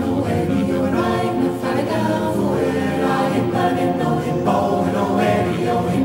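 Choir singing a cappella in several voice parts, holding sustained chords that shift every second or so.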